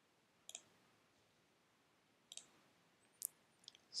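A few faint, sharp computer mouse clicks against near silence: one about half a second in, one just after two seconds, and a quick few near the end.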